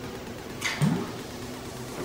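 A shot glass dropped into a glass of Red Bull: one short splash and clink a little over half a second in, followed by a brief rising vocal sound.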